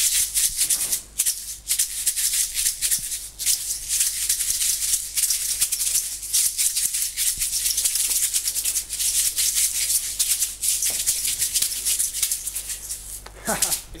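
A pair of maracas shaken hard and fast as they are punched through the air in shadowboxing, a dense rattle of quick strokes with only brief pauses.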